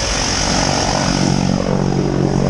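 Twin-engine turboprop jump plane's engines running on the ground: a steady propeller drone with a high turbine hiss above it, the drone firming up about half a second in.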